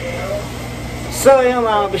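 A steady low background hum, then a man starts talking about a second and a quarter in.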